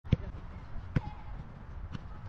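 Sharp thuds of a football being struck, three times about a second apart, over a steady low rumble.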